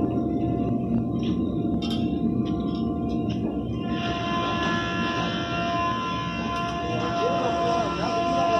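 A large hanging metal sound instrument ringing with long, overlapping sustained tones; a fresh set of higher tones comes in about four seconds in, and the pitch wavers near the end.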